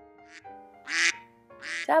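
Soft background piano music with three short, raspy quack-like calls, the middle one loudest.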